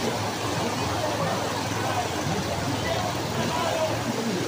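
A motor vehicle engine running steadily through a flooded street, a low hum under the voices of people around it.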